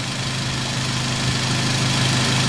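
Car engine idling steadily, with wind noise on the microphone.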